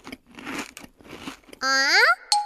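Cartoon crunching sound effect of a koala munching eucalyptus leaves, three short bites in a row. Near the end a pitched note glides upward as the koala is startled.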